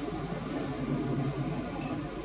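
Steady low background noise with a faint hiss: the hall's room tone picked up by the handheld microphone during a pause in speech.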